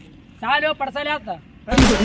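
A short spoken phrase, then one loud, sharp bang near the end.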